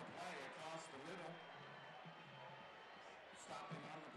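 Faint background voices over low field ambience, fading after about a second and a half, with a faint steady high whine under them.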